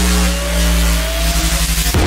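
Drum and bass track in a breakdown: the drums drop out, leaving a heavy held sub-bass, a slowly rising tone and a wash of hiss that sounds somewhat like a revving engine. The beat comes back with a sharp hit at the very end.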